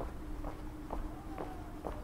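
Footsteps of a person walking on a paved street, about two steps a second, with a steady faint hum underneath.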